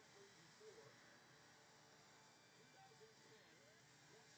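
Near silence: room tone with a very faint, indistinct voice-like murmur far in the background.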